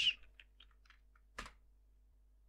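Computer keyboard typing: a few light keystrokes, then one sharper key press about one and a half seconds in.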